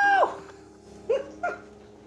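Domestic cat meowing: the end of a long, high meow fades out just after the start, then two short rising meows come about a second in, a third of a second apart.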